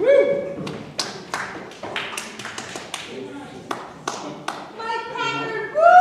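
A few scattered, irregular handclaps with indistinct voices in a large hall. Just before the end comes a loud, drawn-out vocal call.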